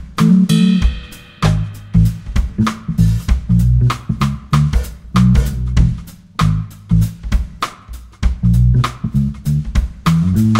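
Funk band playing an instrumental groove: a bass guitar line and drum kit, with guitar, and no vocals.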